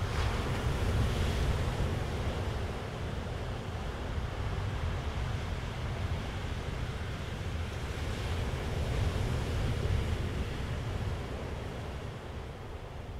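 Sea surf and wind: a steady rushing wash with a heavy low rumble. It swells near the start and again about nine seconds in, then fades toward the end.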